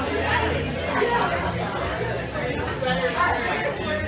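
Indistinct chatter of many people talking at once in a crowded bar.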